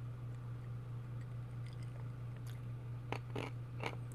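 A person sipping and swallowing a drink from a glass, with a few soft clicks in the second half, over a steady low hum.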